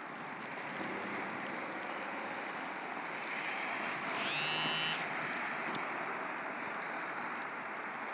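Steady hiss of rain and wet snow falling on pavement. About four seconds in, a brief high tone rises in pitch and lasts about a second, then stops.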